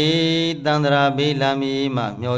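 A Buddhist monk chanting in a long, drawn-out male voice, holding steady notes with short breaks between phrases.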